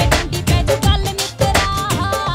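Live Punjabi folk-pop band playing through a PA, with a strong, regular drum beat under a woman's singing; near the end a held, stepping melody line comes in.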